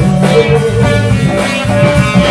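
Live band playing an instrumental passage: guitar, keyboard, drum kit and trumpet, with held notes over a steady accompaniment.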